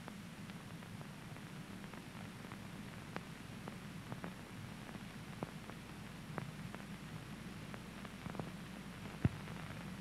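Faint steady low hum with scattered, irregular soft clicks and pops: the background noise of an old film soundtrack between stretches of narration.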